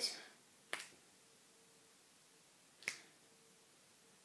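Two finger snaps, about two seconds apart.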